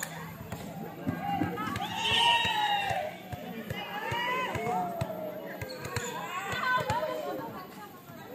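High women's voices calling and shouting out on a volleyball court, several rising and falling calls, with scattered sharp knocks of a ball bouncing on the hard court.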